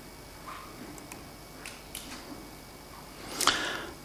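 Quiet room tone through a desk microphone, with a few faint small clicks and a brief louder noise near the end.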